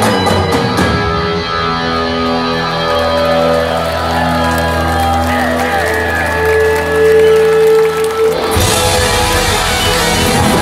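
A live rock band plays loudly: electric guitars hold sustained chords while a lead line wavers over them. About eight and a half seconds in, the drums and the full band crash back in.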